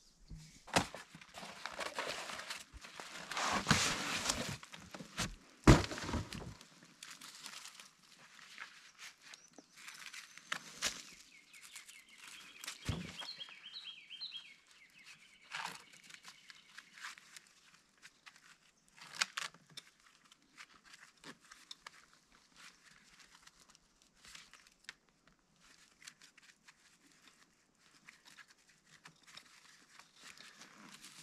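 A person moving about and handling things outdoors: irregular rustling, crackling and knocks, loudest in the first six seconds, with a couple of sharp thumps about four and six seconds in.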